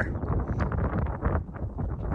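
Wind buffeting the microphone, a gusty low rumble.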